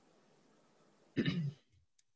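A man clears his throat once, a short burst a little over a second in.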